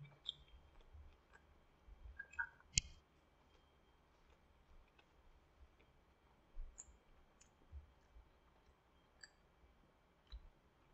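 Faint mouth sounds of a person chewing a bite of burrito: scattered small clicks over near silence, the sharpest about three seconds in.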